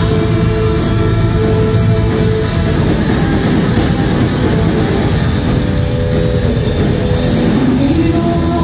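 Live rock band playing loud, heavy-metal-style: electric guitars over a drum kit with steady, evenly repeating cymbal strikes, heard from among the audience in a club.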